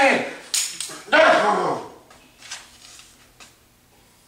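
A person's loud, wordless shout, falling in pitch, lasting under a second, with a brief sharp noise just before it. After the shout only a few faint knocks are heard.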